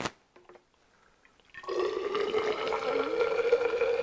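Hydrogen peroxide being poured from a bottle into a graduated cylinder, starting about a second and a half in as a steady pour with a hollow ringing tone from the filling tube. A small click comes just before it, at the very start.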